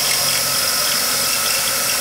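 Drill running steadily as its microstop countersink cutter cuts a countersink into a rivet hole in aluminium sheet. This is a trial cut after the stop was screwed out to make the countersink shallower.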